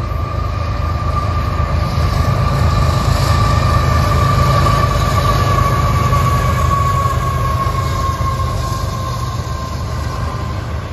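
A diesel-hauled freight train passing. The low engine rumble is loudest as the locomotives go by mid-way, then eases as the freight cars roll past. A steady high whine runs through it, slowly sinking in pitch.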